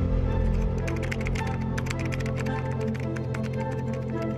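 Background music with sustained chords, over which a computer keyboard clicks in a quick run of keystrokes for about three seconds, stopping shortly before the end.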